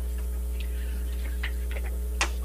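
Steady electrical mains hum on the meeting-room sound system, with a few faint short ticks in the second half.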